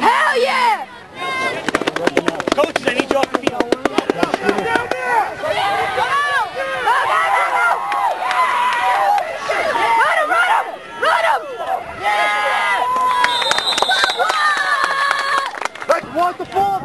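Crowd of spectators and players shouting and cheering during a youth football play, the voices high-pitched and overlapping. Near the start, a fast run of sharp clicks lasts about three seconds.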